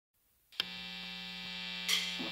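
Steady electrical hum with a stack of overtones, switched on with a click about half a second in, and a brief noisy burst near the end.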